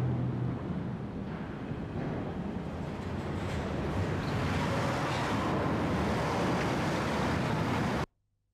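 Steady engine noise: a low rumble under a broad rushing hiss that grows brighter after a few seconds, starting and stopping abruptly.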